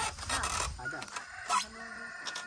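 A rooster crowing, over knocking and scraping on wooden planks as someone climbs into a hut in the first second.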